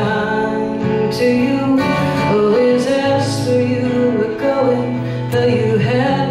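A woman singing sustained notes over a strummed acoustic guitar in a live solo performance.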